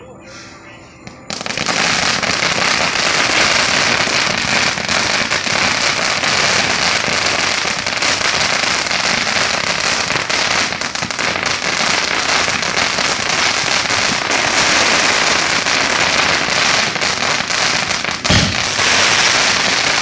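Consumer firework fountain catching about a second in with a sudden onset, then spraying steadily with a loud hiss peppered with crackles.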